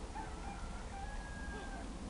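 Wind rumble on the microphone outdoors, with faint thin whistle-like tones, one held for most of a second about halfway through.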